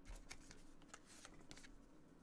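Near silence with a few faint light clicks and rustles of trading cards being handled on a desk.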